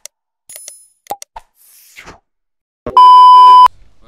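Sound effects of an animated subscribe-button graphic: a few short mouse-click and pop sounds and a brief swish, then a very loud, steady, high beep lasting under a second that cuts off suddenly.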